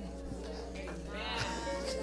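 Worshippers' wavering, drawn-out cries of praise over sustained music chords, the voices swelling in the second half.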